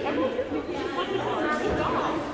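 Indistinct chatter of many voices echoing in a gymnasium.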